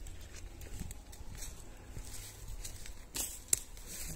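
Faint crackles and clicks of footsteps on the twig- and needle-strewn forest floor, with a sharper snap a little before the end, over a low steady rumble.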